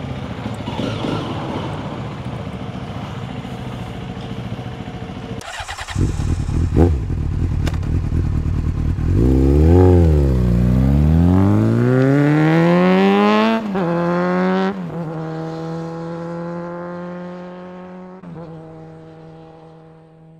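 Honda CRF300L's single-cylinder engine idling with a fast, even pulse, then pulling away: the revs dip and climb, drop sharply twice as the bike shifts up, and then hold a steadier pitch that fades as it rides off.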